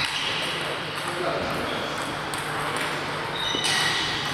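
Celluloid/plastic table tennis balls striking rackets and table tops at several tables at once, each contact a short high-pitched ping, with a cluster of them near the end.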